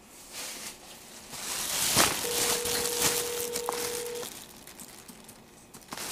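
Telephone ringback tone over a phone's speakerphone: one steady two-second ring starting about two seconds in, part of a call ringing out with two seconds on and four off. Paper rustling and handling noise run alongside it.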